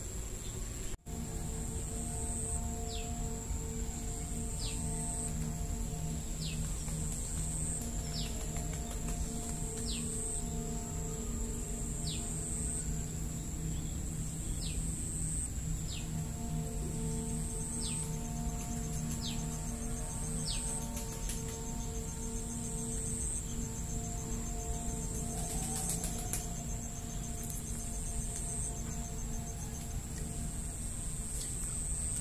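Background music of sustained held notes that change every few seconds, with a short high falling chirp repeating about every second and a quarter, over a steady low background rumble.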